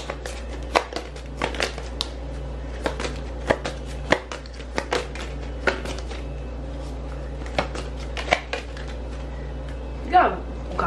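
A deck of oracle cards being shuffled by hand, with cards dropping onto the table: irregular sharp slaps and clicks of card stock, about two a second, over a low steady hum.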